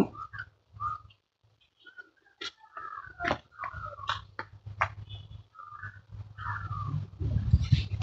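Faint short animal calls now and then, with a few sharp clicks and knocks and a low rumble that swells near the end.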